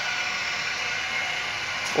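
A steady hiss of background noise, unchanging throughout, with no distinct events.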